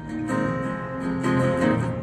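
Acoustic guitar strumming chords, with the chord changing a couple of times.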